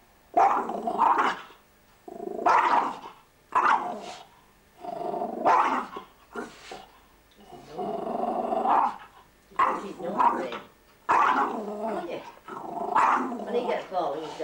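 Small terrier growling and barking in a string of about nine drawn-out growl-barks, each about a second long with short pauses between.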